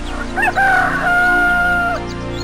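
Rooster crowing once: a cock-a-doodle-doo of short rising notes ending on a long held note that cuts off suddenly.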